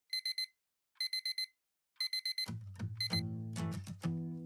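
Smartphone alarm beeping in quick groups of four, one group about every second, until it stops a little after three seconds in. Music with a deep bass line comes in at about halfway.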